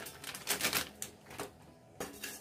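Wooden spatula stirring dry mace blades in a pan as they are dry-roasted, giving a few light, crisp clicks and rustles in short bursts.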